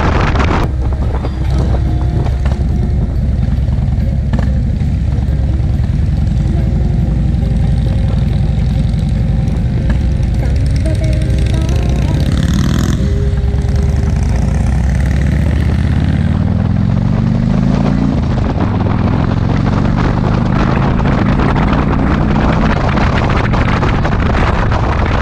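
Motorcycle riding on the road, its engine rumbling under heavy wind noise on the microphone. In the second half the engine pitch rises twice as it accelerates, with a gear change in between.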